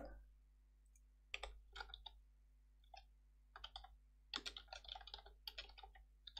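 Computer keyboard typing, faint: short irregular runs of keystroke clicks with gaps between them, the densest run in the last second and a half.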